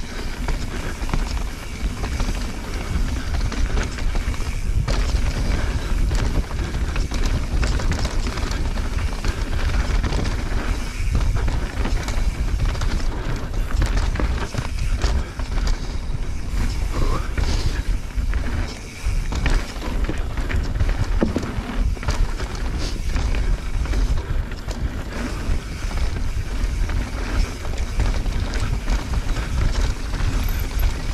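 Mountain bike descending a rough dirt and rock trail: tyres rolling on dirt and the chain and frame clattering over bumps, with wind buffeting the camera microphone.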